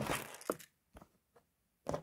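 Hands handling plastic Lego pieces: a brief rustle, then a sharp click and a few faint ticks.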